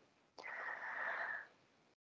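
A person's audible breath, a soft wheezy intake lasting about a second, heard over a video-call line.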